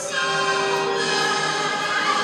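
Music with sung voices, holding a long note through the first second.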